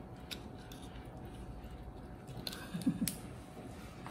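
Boiled king crab leg shell being cracked and pulled apart by hand: faint scattered clicks and crackles of the shell, with a sharp snap about three seconds in. A short vocal sound from the person comes just before the snap.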